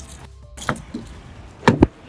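A few short knocks, one about a second in and a louder quick pair near the end, over faint background music.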